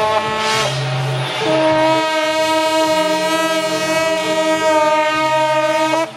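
Chinese suona (double-reed horns) of the procession band sounding loud, long held notes. The notes change about a second and a half in, then hold steady.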